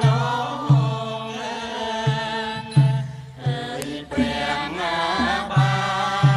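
A voice chanting in a slow, wavering melodic line, with a few low drum strokes at irregular intervals beneath it.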